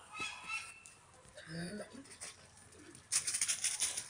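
A pit bull terrier running up close through dry fallen leaves, its quick footfalls rustling from about three seconds in. Before that, only faint distant calls.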